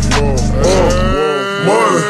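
Slowed-down hip hop beat: a repeating melodic figure over deep 808 bass. The bass cuts out a little over a second in, and a long, low held note takes over into the hook.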